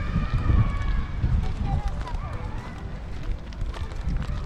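Footsteps and handling rumble from a handheld camera carried at walking pace, with faint voices in the distance.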